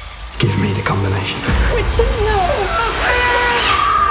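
Horror film trailer soundtrack: a heavy low thud about half a second in, then wavering, wailing voice sounds over music, and an older woman starting a held scream near the end.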